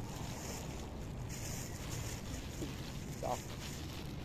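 Wind buffeting the microphone in a steady low rumble, with a plastic bag crinkling in the hands in the first couple of seconds and a short hum-like sound a little past three seconds.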